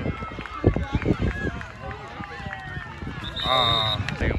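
Sideline spectators' voices at a youth football game, overlapping chatter and shouts, with a short, steady high-pitched tone near the end.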